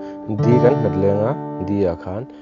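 Acoustic guitar fingerpicked on a Cadd9 chord, plucking the fifth, third, first and second strings in turn, with the notes ringing on. It moves to a D chord near the end.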